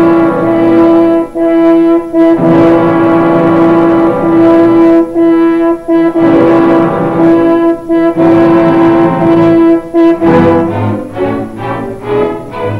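Opera orchestra playing a loud, slow passage: one held note repeated with short breaks over lower notes. The music thins and quietens near the end.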